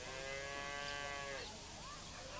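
A cow mooing once, one steady call of about a second and a half that sags slightly as it ends, with a faint bird chirp just after.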